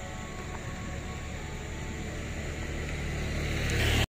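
Road vehicle rumble that grows steadily louder, with a hiss of tyre noise rising near the end.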